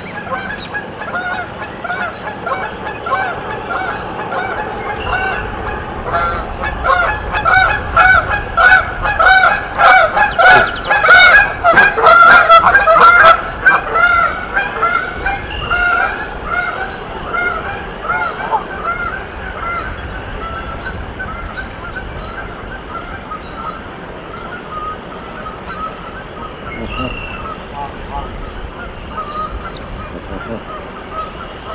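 Canada geese honking in a rapid, repeated series of about two calls a second, building to loud, close honks in the middle, then tapering off to softer calling.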